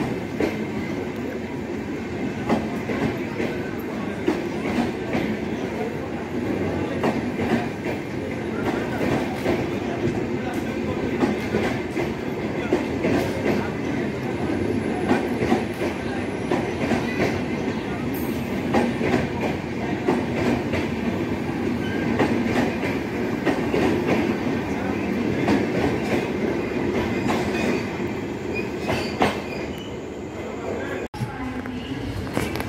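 LHB passenger coaches running past at speed: a steady rumble of steel wheels on the rails with many sharp clicks as the wheels cross rail joints.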